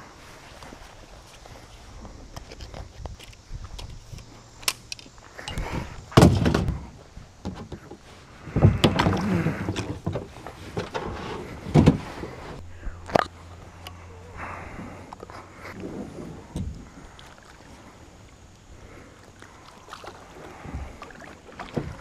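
A plastic kayak and its paddle being handled while getting in and setting off from a mossy bank: a series of irregular thumps and knocks, the loudest about six seconds in, with scraping and rustling between them.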